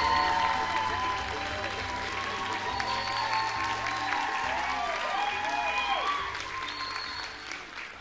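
An audience applauding over music. The sound fades out near the end.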